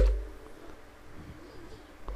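A sharp click with a low thump right at the start, fading within about half a second, then faint low wavering tones in the background.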